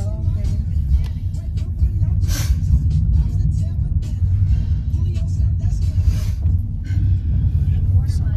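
Road noise inside a moving car's cabin: a steady low rumble from the engine and tyres, with short rushing swells about two and a half and six seconds in.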